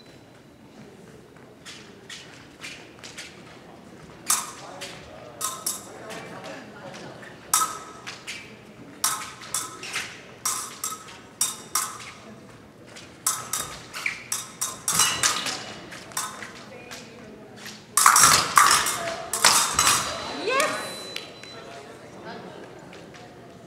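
Épée blades clashing and fencers' feet stamping on the metal piste in a run of sharp clicks and clangs. About 18 s in a touch is scored: a loud burst of sound, followed by a fencer's shout.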